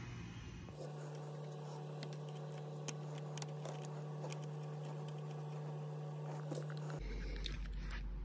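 Faint clicks and handling noises as a fuel pressure gauge hose is screwed onto the Schrader valve on the fuel rail of a Mercruiser 6.2 engine that is not running, over a steady low hum.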